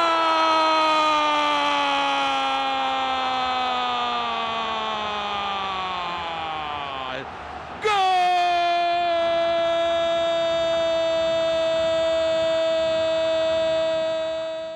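Football commentator's long drawn-out goal cry, "goooool", held on one breath for about seven seconds while its pitch slowly sinks. After a quick breath a little past the halfway point, he takes it up again and holds it at a steady pitch to the end.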